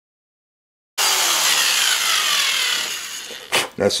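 Cordless drill boring into the plastic body of a Bic lighter. It starts abruptly about a second in, after dead silence, with a whine that falls in pitch as the bit bites into the lighter's inner plastic wall. It fades out after about two seconds, followed by a click.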